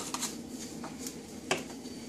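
Light handling clicks of a plastic-lidded jar being closed and set down on a kitchen counter, with one sharper click about one and a half seconds in.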